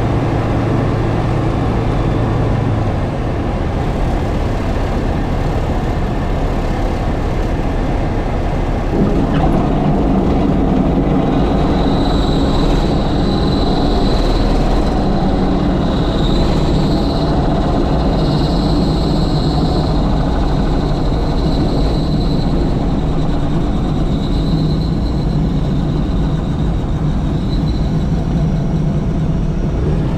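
Single-engine light aircraft's piston engine and propeller heard from inside the cockpit, running steadily while taxiing, then opening up to a louder, fuller drone about nine seconds in as power is added for the takeoff roll down the runway.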